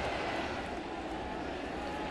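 Steady murmur of a ballpark crowd, a diffuse even hum of many voices with no single sound standing out.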